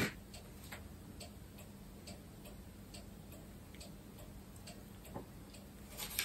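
Faint, steady ticking of a clock, about two ticks a second. At the very start there is a short burst from the match that lights the candle, and a soft knock a little after five seconds.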